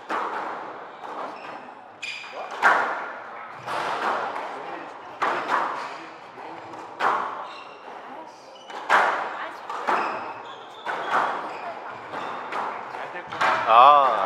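Squash rally on a glass court: the hard rubber ball cracks off rackets and walls about once a second, each hit ringing briefly in a large hall. A voice calls out near the end.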